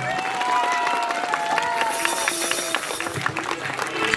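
Audience applauding, a dense patter of many hands clapping, with music playing under it.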